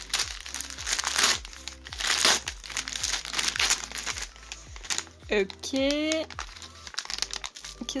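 Glossy gift wrapping paper and a brown kraft paper bag crinkling in the hands as a present is unwrapped, in repeated bursts, loudest in the first couple of seconds.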